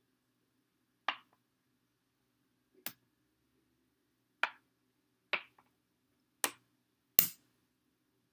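Checker pieces clicking as they are moved, jumped and set down on the board and onto a stack of captured pieces. There are six separate clicks a second or so apart, and the last is the loudest.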